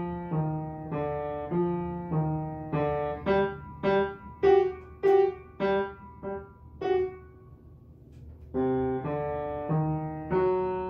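Upright piano played by a young student: a simple melody of single notes over lower notes, then a run of short, detached notes. A held note dies away about seven seconds in, and after a short gap the playing resumes.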